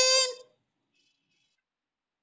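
A woman's high-pitched, drawn-out excited cry held on one pitch, cutting off about half a second in.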